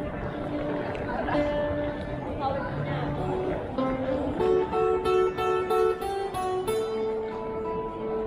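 A busker's acoustic guitar played with picked single notes, a slower melody at first, then a quicker, louder run of notes in the second half.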